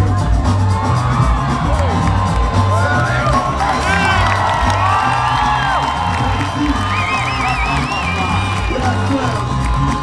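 Breaking battle music played loud with a steady, heavy bass beat, while a crowd cheers and whoops over it; the whoops come thickest from a few seconds in until near the end.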